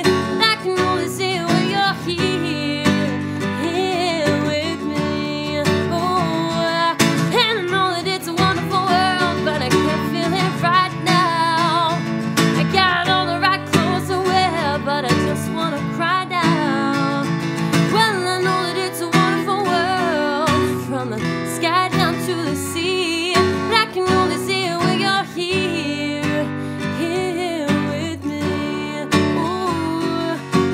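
A woman singing a slow pop ballad while strumming an acoustic guitar with a capo on the neck, voice and guitar continuing throughout.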